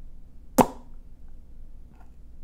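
A single sharp pop a little over half a second in, over faint room tone.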